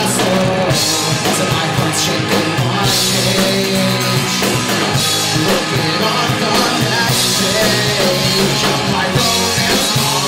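Live rock band playing a song, loud and steady, with electric guitars and a drum kit, its cymbals ringing throughout.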